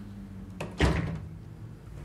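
A door shutting with a single thud a little under a second in.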